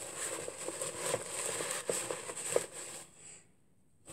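Rummaging through a cardboard box of packaged food: paper packing and packets rustling and crinkling, with small clicks and knocks. It stops about three seconds in.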